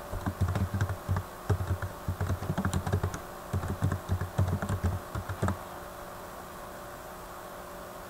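Typing on a computer keyboard: a quick run of keystrokes lasting about five and a half seconds, then stopping.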